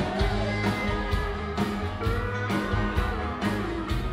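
A live rock band playing: guitar over drums with a steady beat, heard from the audience.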